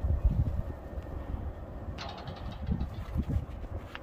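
Wind buffeting the microphone in uneven low gusts, with a sharp knock about two seconds in and another at the very end.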